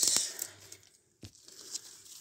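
Dry leaves and grass rustling and crackling as they are handled: a burst at the start that fades away, with a single sharp click a little after a second in.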